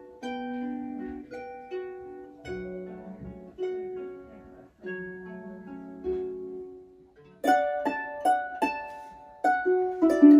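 Harp being plucked, playing a slow hymn melody in single ringing notes over lower accompanying notes. About seven seconds in, the playing becomes suddenly louder, with sharper and more closely spaced plucks.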